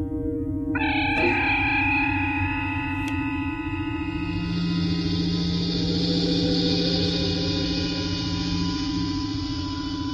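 Star Trek transporter beam sound effect: a shimmering, chiming hum that starts about a second in and holds steady as the landing party dematerializes, over background music.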